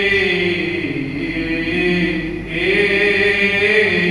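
Greek Orthodox priest chanting the Gospel reading in Greek, a single voice holding long notes that glide slowly up and down.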